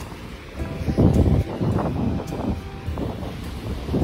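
Wind buffeting the microphone in gusts, strongest from about a second in, over the wash of surf on the beach.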